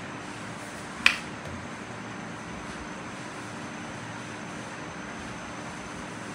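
A single sharp plastic click about a second in: the flip-top cap of a sunblock tube snapping shut. Behind it is a steady low room hum.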